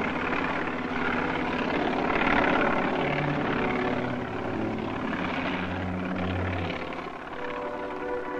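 Helicopter engine and rotor running steadily, with a continuous mechanical drone and rotor chop.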